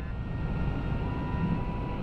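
Steady low rumble of a moving vehicle's engine and tyres, with faint steady whining tones above it.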